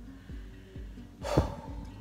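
Soft background music with recurring plucked guitar-like notes, and a woman's short, sharp breath (a gasp or sigh) with a falling pitch about a second and a half in.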